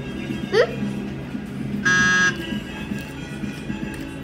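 A short electronic buzzer sound effect, one steady blare about half a second long, about two seconds in, over background music. It works as a "wrong" buzzer.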